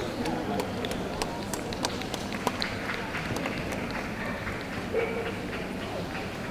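A handler's quick footsteps as he trots a dog around the show ring, heard as a run of light, sharp taps about two to three a second, over a low murmur of voices.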